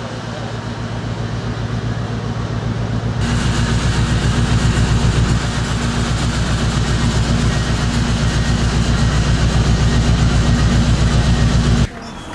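Cruise ship's machinery heard on the open deck: a steady low hum with a fast, even throb, growing louder and fuller about three seconds in and cutting off abruptly just before the end.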